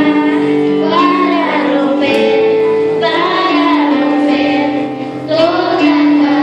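Children's choir singing together with a woman's voice leading on microphone, over steady instrumental accompaniment. There is a short break between phrases about five seconds in.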